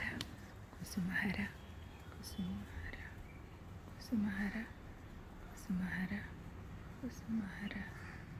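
A woman's voice softly chanting the same short name over and over, about once every one and a half seconds: a devotional name chant (nama japam).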